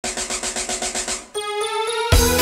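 Intro of a 1990s pop dance track: a rapid, even drum roll of about eight strokes a second that stops just over a second in, followed by held keyboard notes stepping upward in pitch.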